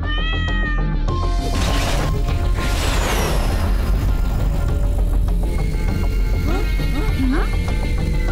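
A cartoon cat's voiced meow in the first second, followed by two whooshing sound effects as a spaceship flies past, all over background music.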